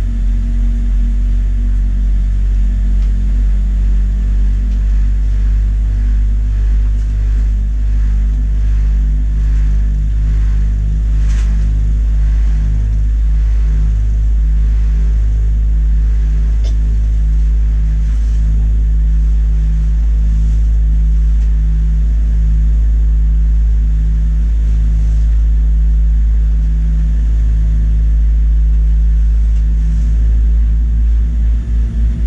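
Boeing 787-9 cabin noise with the GEnx-1B engines idling: a steady low rumble with a faint hum, and a couple of brief clicks in the middle.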